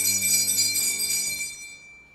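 A bright cluster of small bells rings out and fades away over about two seconds, with the last low held notes of the background music dying out beneath it.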